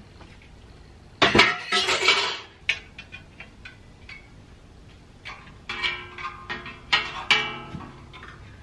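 Metal clattering and clinking as a loose steel bandsaw blade is handled and fed down through the saw's table slot: a loud jangle about a second in, then a run of lighter clinks with brief ringing near the end.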